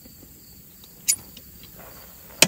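Faint steady chirring of insects, with one sharp click about a second in.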